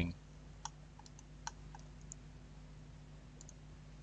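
Faint computer mouse clicks, about seven scattered through, over a low steady electrical hum.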